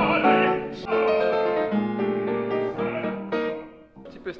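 Baritone singing a classical French art song with grand piano accompaniment, in held, sustained notes; the music fades out near the end.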